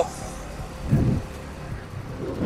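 Motorcycle riding along a town street: a low, steady run of engine and road noise, with a short low rumble about a second in.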